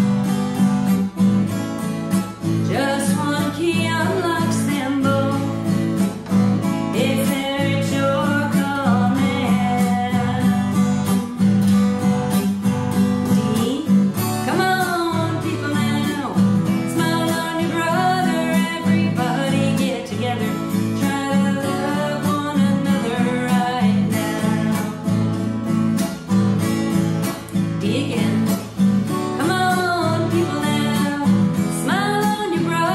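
Acoustic guitar strummed steadily in a slow rhythm, with a woman singing along in phrases over the chords.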